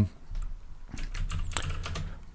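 Computer keyboard being typed on: a short run of separate keystrokes as a password is entered.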